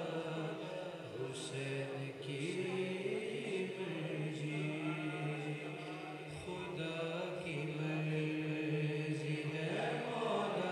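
Several men's voices chanting a devotional refrain together in long, held notes, steady and without a lead voice.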